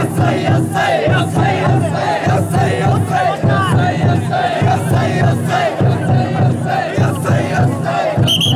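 Large crowd of chōsa (drum float) bearers shouting a short chant over and over in unison, with the float's taiko drum beating underneath.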